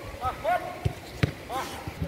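Football training: short shouted calls from players, with sharp thuds of the ball being struck and caught, the loudest about a second and a quarter in.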